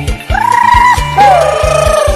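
Isan lam ploen band music: a lead melody holds long wavering notes, the second sliding down to a lower held note about a second in, over a steady bass-drum beat.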